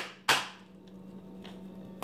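Two sharp knocks about a third of a second apart, made by hands working close to the microphone, followed by a faint steady hum and a few soft clicks.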